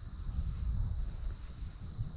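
Wind buffeting the microphone as a low rumble that swells slightly in the first half second, over a steady high-pitched insect trill typical of crickets.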